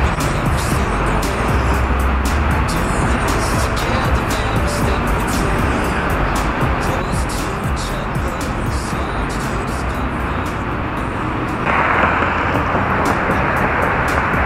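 Background pop music with a steady beat, over a constant rushing noise of outdoor air and wind on an action camera's microphone; the rushing grows louder about twelve seconds in.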